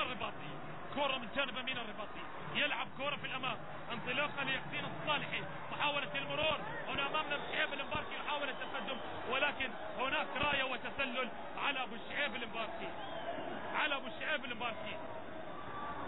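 A man's voice commentating in Arabic over a steady background of stadium noise.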